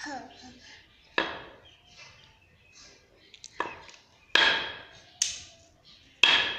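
A mallet with a wooden handle struck down onto a concrete floor four times at uneven intervals, each a sharp knock; the third, about four seconds in, is the loudest.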